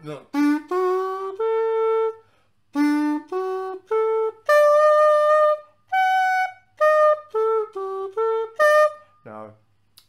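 Xaphoon, a black plastic single-reed pocket sax, playing a major-triad arpeggio in separate, clear notes. Three rising notes come first; after a short pause it climbs the triad again to a long held top note, then one higher note, then steps back down and up again. The F sharp in it needs the lip pulled in a little to sound in tune.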